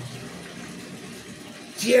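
Steady hiss of background noise through a pause in a man's speech, with no distinct event in it; his voice returns loudly near the end.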